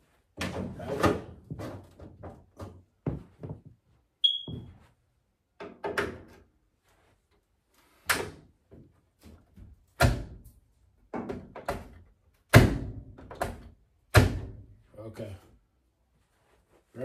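Dryer lint screen slid back into its slot with rustling and knocks, then the dryer's drop-down front door shut and latched several times, four loud sharp thunks in the second half, testing that the door closes properly.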